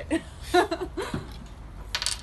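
Short bursts of laughter and small vocal sounds from people, over a low steady background rumble.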